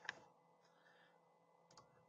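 A few faint computer keyboard key clicks: one just after the start and a couple near the end, with near silence between.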